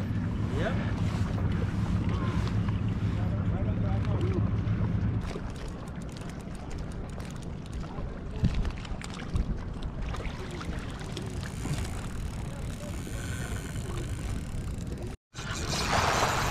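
Wind and water noise on open water from a kayak, with a low steady hum in the first five seconds. Near the end, after a brief cut, a rush of splashing as a school of fish breaks the surface.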